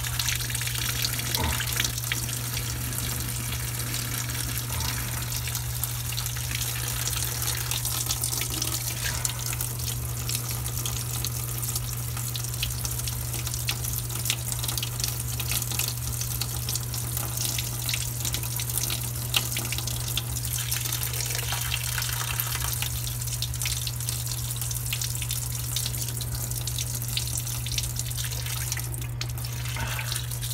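Dirty wastewater pouring steadily from a hose and splashing into a grated drain, over a constant low hum.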